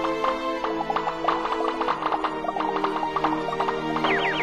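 Gentle background music with a rapid run of short cartoon pop or click sound effects laid over it, many per second, growing denser about a second in.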